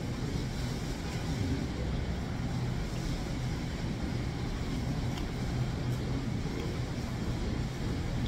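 Steady low background rumble with a constant hum, unchanging throughout, the machinery-and-room noise of a small restaurant dining room.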